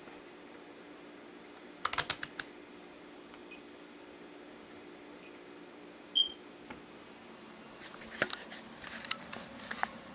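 Clusters of sharp clicks and small rattles from handling wire leads and clip connections, once about two seconds in and again scattered near the end, over a faint steady hum. A single short high beep sounds about six seconds in.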